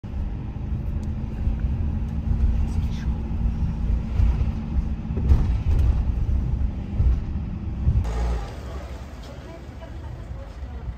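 Low rumble of a vehicle driving along a road, with a steady low hum through the first half. About eight seconds in, the sound cuts to a quieter background.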